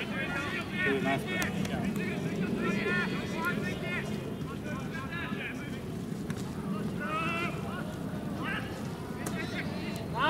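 Players' shouts and calls from across the pitch, short and scattered, over a steady low background rumble.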